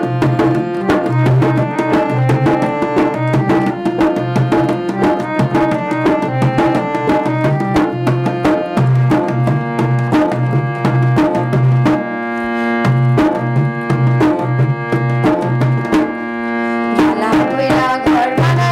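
Harmonium playing a melody over a steady rhythm of deep strokes on a hand-played two-headed barrel drum, with no singing. About twelve seconds in, the harmonium holds long chords for several seconds while the drum keeps time.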